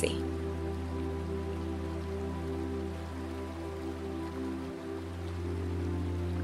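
Ambient meditation background music: sustained pad tones over a steady low drone, the chord shifting slightly near the end.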